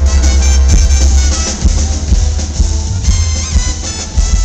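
A live brass band playing: saxophone, trumpet and sousaphone over a drum kit, with a heavy, steady bass line underneath.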